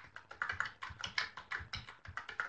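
Rapid typing on a computer keyboard: a quick, uneven run of light keystroke clicks.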